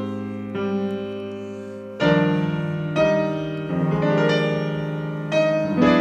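Solo acoustic piano playing slow, sustained jazz chords in a ballad arrangement: a new chord struck roughly every second and left to ring, the strongest around two seconds in and near the end.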